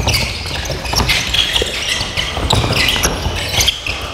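Handball players' shoes squeaking and pounding on a wooden sports-hall court during a fast drill, with a few sharp knocks from the ball bouncing and being caught, echoing in the large hall.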